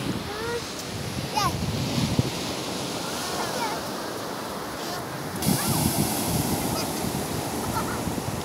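Ocean surf washing onto a sandy beach, a steady rush of noise, with wind gusting on the microphone.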